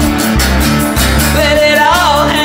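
Glam-rock song with electric guitar chords over bass and drums. A male voice sings a line in the second half.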